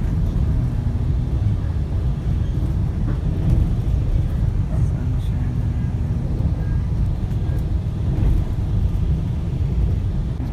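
Steady low rumble of a GO Transit commuter train in motion, heard from inside the passenger coach.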